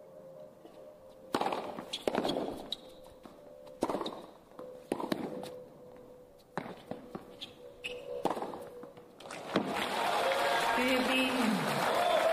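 Tennis rally: a string of sharp racket strikes on the ball, about one a second, ringing briefly in the stadium. About ten seconds in, steady crowd applause takes over as the point ends.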